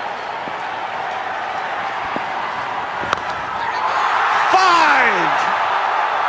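Cricket stadium crowd noise with a sharp crack of bat on ball about three seconds in. The crowd then rises into a cheer, and a single voice gives one long falling shout.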